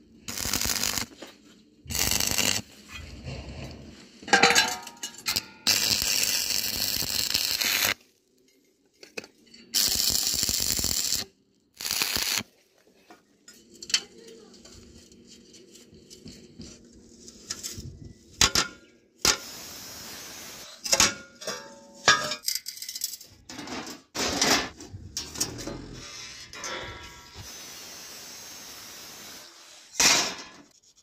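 Steel workshop sounds in a run of short cuts: steel pieces knocking, clinking and rattling against each other and the steel jig, with a few loud stretches of noise.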